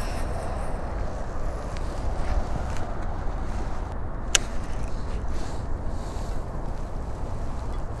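Steady low rumble of wind on the camera microphone while fishing from a small boat, with one sharp click about four and a half seconds in.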